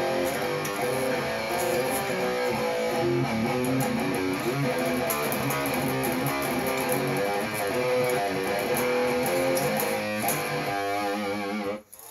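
Electric guitar in standard E tuning being played, a continuous run of changing notes and chords that stops just before the end.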